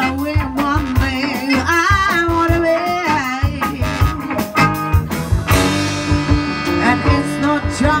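Live soul band playing with a female lead vocal, drums, electric guitar and horns. She sings bending, ornamented lines over the first few seconds. About five and a half seconds in a sudden loud hit marks the start of a held chord from the band.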